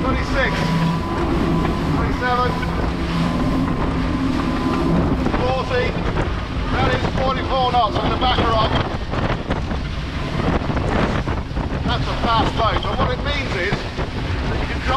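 Twin Mercury Verado 350 hp outboards running at full throttle at about 33 knots, under heavy wind buffeting on the microphone and the rush of the hull through water. The engines' steady hum stands out most in the first few seconds.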